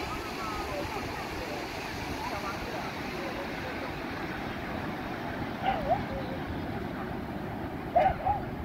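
Busy beach ambience: a steady rush of surf and wind under the distant chatter and calls of many beachgoers, with louder shouts a little past halfway and again at the end.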